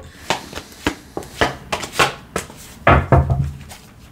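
A deck of tarot cards being shuffled in the hands and dealt onto a cloth-covered table: a string of short, sharp card clicks and flicks, with a louder knock about three seconds in.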